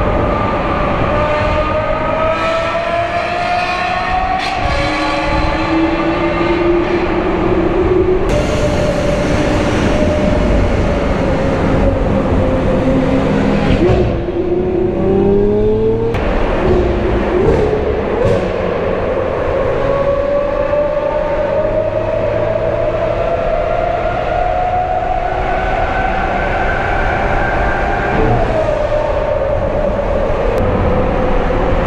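Lamborghini Aventador SV Roadster's naturally aspirated V12 running through an aftermarket Brilliant exhaust under hard acceleration. Its pitch climbs in long pulls and drops back at each gear change, several times over.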